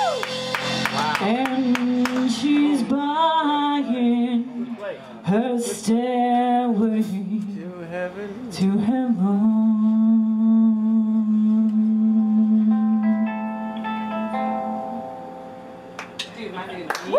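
A woman singing live with the band, her voice bending and sliding over electric guitar. She then holds one long low note that fades away near the end as the song closes.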